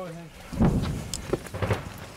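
Footsteps on wooden boards and dry branches, a run of irregular knocks and rustles that are loudest about half a second in. A short voiced sound comes right at the start.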